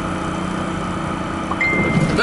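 Steady low engine hum and rolling noise heard inside a car's cabin as it is pulled slowly on a tow strap behind a pickup truck. A brief high steady tone sounds near the end.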